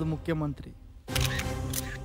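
A man's voice trails off. After a short pause, background music comes in with steady low held notes, and a brief sharp click sounds near the end.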